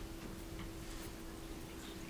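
Quiet room tone of a large meeting hall: a steady low hum with a few faint, scattered clicks.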